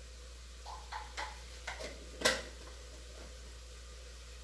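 A few light, irregular clicks and knocks of a spoon and cooking pot being handled on the stove, the loudest about two seconds in.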